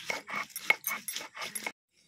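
Hand-held grinding stone rubbed back and forth over a flat stone grinding slab with a wet paste, about four to five squeaky scraping strokes a second, stopping abruptly near the end.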